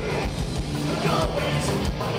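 Heavy metal band playing live: distorted electric guitar, bass and drums, with a steady kick-drum pulse.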